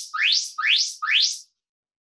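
Phone interval timer sounding its start signal: a run of identical electronic chirps, each rising quickly in pitch, about two a second, four in all, marking the start of a 30-second work round.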